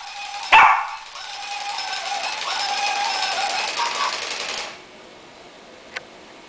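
A single sharp dog bark, then the gear motors of a Tekno toy robot dog whirring and grinding steadily for about four seconds as it walks, stopping abruptly.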